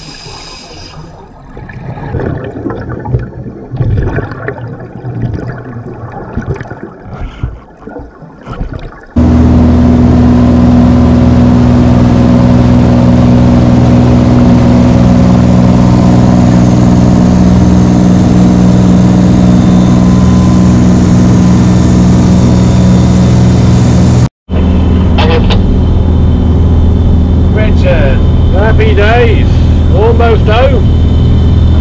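Underwater, a scuba diver's regulator breathing and bursts of exhaled bubbles, irregular and fairly quiet. About nine seconds in this gives way abruptly to a dive boat's engine running at speed, loud and steady, with voices over it near the end.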